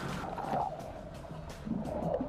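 Sea water splashing and churning as people plunge into it from the side of an inflatable boat, over background music.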